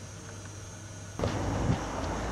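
Quiet room tone with a steady low hum, then a sudden switch about a second in to louder outdoor background noise, an even rushing sound as of wind and traffic in a parking lot.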